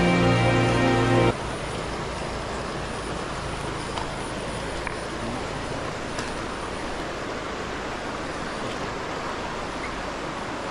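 Background music that cuts off abruptly just over a second in, followed by a steady, even rushing of flowing river water.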